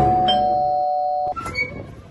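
Two-note doorbell chime: a higher note, then a lower one about a third of a second later, both ringing steadily together for about a second before cutting off.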